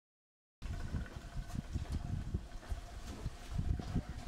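Dead silence for about half a second, then a low, uneven rumble with irregular soft thumps: the ambient noise aboard a small boat on open water.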